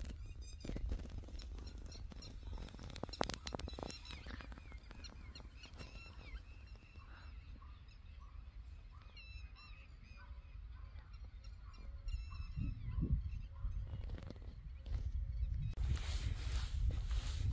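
Birds calling with many short, repeated chirps, over a steady low rumble, with a few sharp clicks about three to four seconds in.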